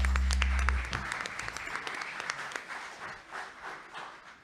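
Congregation applause after a worship song, many hands clapping and thinning out toward the end. The band's last held chord dies away about a second in.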